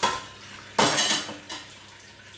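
Dishes being washed in a stainless steel sink under a running tap. A pan clatters against the sink twice, once at the start and more loudly a little under a second in, with a smaller knock after, over the steady hiss of running water.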